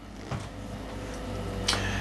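Quiet room tone with a steady low hum from the recording, and a short soft noise near the end.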